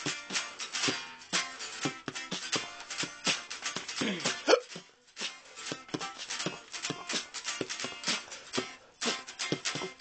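Guitar music: fast, densely plucked notes, with a swooping pitch glide about four seconds in and a brief break just before five seconds.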